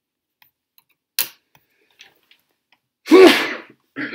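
A short sharp sound about a second in, then one loud human sneeze about three seconds in.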